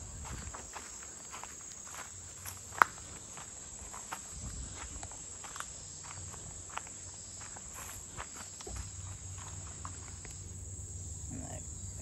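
Footsteps on dry dirt and leaf litter, with a steady high-pitched insect chorus running underneath. A single sharp click stands out about three seconds in.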